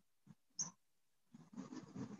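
Mostly near silence, then, about one and a half seconds in, a faint, low, rough animal sound begins and carries on.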